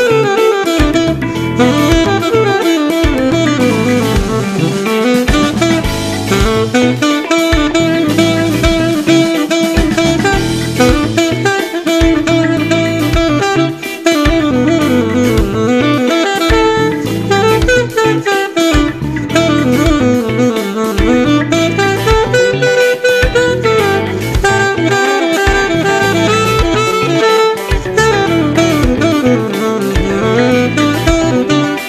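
Saxophone improvising a funk solo over a backing track of electric guitar and drums, with a steady groove underneath.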